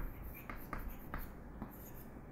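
Chalk writing on a chalkboard: a series of short, quiet taps and scratches as a few characters are chalked on.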